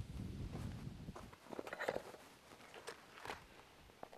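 Faint footsteps crunching on gravel, with light rustling and a few small clicks scattered through as handheld flags on wooden staffs are carried.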